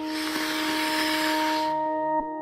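Speed skate blade scraping across ice, a hiss that starts suddenly and fades out near the end, over steady ambient music tones.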